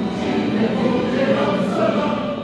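A children's choir singing together into microphones, holding long sung notes.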